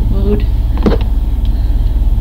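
A steady low hum, with a short hummed vocal sound just after the start and a sharp click just before a second in.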